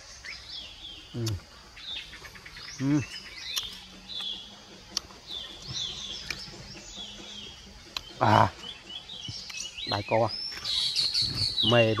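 Small birds chirping over and over: many short high calls, some sliding down in pitch, busiest near the end. A man's brief murmurs break in a few times, the loudest about eight seconds in.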